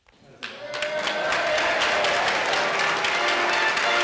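Audience applause that swells up from silence in about the first second and then holds steady, with music underneath.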